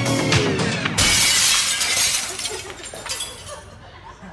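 Upbeat dance music breaks off about a second in with a loud glass-shattering sound effect. The crash then fades away over the next two seconds or so.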